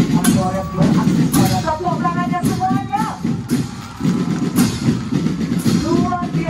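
Marching drum band playing: massed bass and snare drums keep a dense beat, with a melody line over it in the first half. The drums drop back briefly about three and a half seconds in, then come in again.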